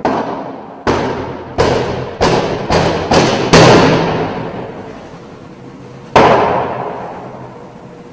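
A series of heavy, echoing thuds: six in under three seconds, coming faster and faster, then one more about three seconds later, over a faint steady hum.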